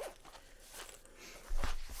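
Faint rustling and small clicks of a zipped fabric crochet-hook pouch being handled and searched, then a louder low thump about a second and a half in as it is knocked or set down.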